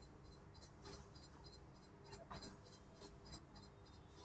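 Near silence: faint classroom room tone with a few soft taps and faint high ticking.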